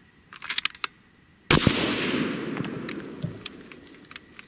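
A single shot from a .308 Winchester Bergara B-14 HMR bolt-action rifle with a radial muzzle brake, about a second and a half in, its report trailing off over about two seconds. A few faint clicks come just before the shot.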